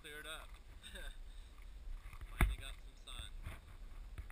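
Faint voices and outdoor background noise from the camera's own audio, with a single sharp knock about two and a half seconds in.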